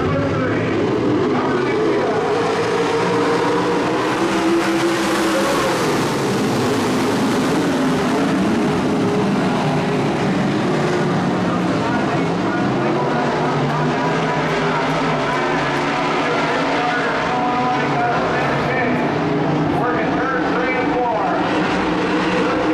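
A field of IMCA modified dirt-track race cars running around the oval, several engines heard together, their pitches rising and falling.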